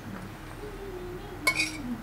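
One short metallic clink with a brief ring about one and a half seconds in, as a stainless mesh sieve and spoon are set against a glass bowl; otherwise only low room tone.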